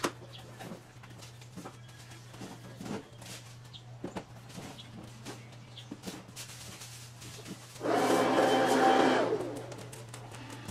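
Faint knocks and clatter of household items being handled on a garage shelf, over a steady low hum. About eight seconds in, a much louder rushing noise with a faint whine in it lasts about two seconds and fades away.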